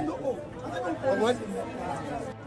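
Speech only: quiet talking.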